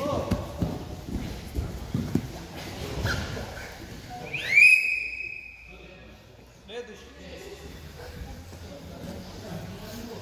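Two wrestlers grappling on a foam training mat: bodies thump and scuff on the mat in a quick series over the first few seconds. About halfway there is one loud high squeal that glides up and then holds for about a second.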